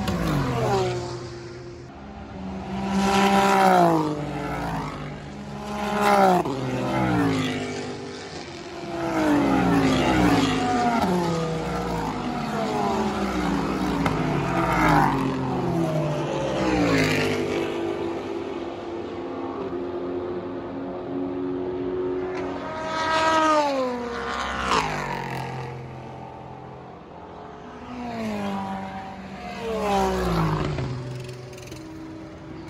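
Race cars passing at speed close by, one after another, each engine note dropping in pitch as the car goes past. Gear changes are heard between the passes.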